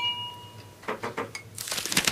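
A short ringing ding at the very start that fades within about a second, followed by faint clicks and rustling.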